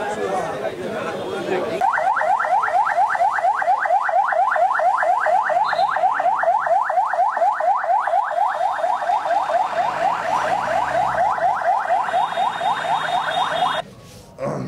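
Police truck siren in fast yelp mode: a rising wail repeated about five times a second. It starts about two seconds in over crowd voices and cuts off suddenly near the end.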